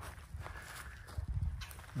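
A few soft footsteps on grass and dry leaves, irregular, with low thuds and a light rustle.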